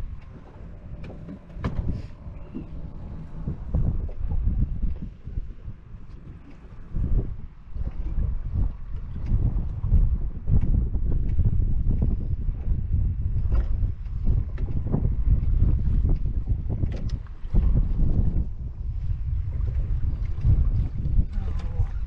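Wind buffeting the microphone in uneven gusts, with water slapping at a small boat's side and scattered short knocks and splashes as a hooked shark is brought to a landing net.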